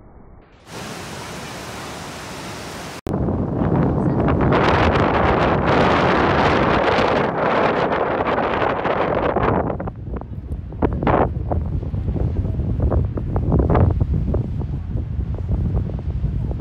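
Steady rush of a waterfall, then, after a cut about three seconds in, gusty wind buffeting the microphone, with uneven gusts in the later part.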